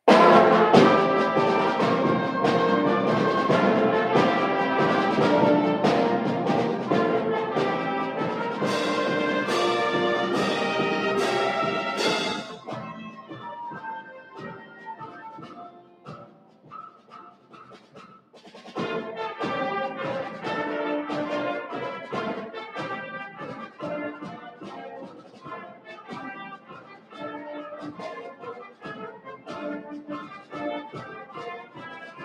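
A school concert band of woodwinds and brass, with trumpets prominent, playing. A loud full-band opening drops away about twelve seconds in to a quiet passage, and the band comes back in at a moderate level with repeated, pulsing notes about nineteen seconds in.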